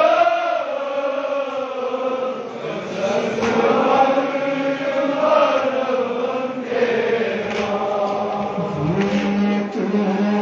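A noha, a Shia mourning lament, chanted by a male reciter in long, slowly wavering melodic lines.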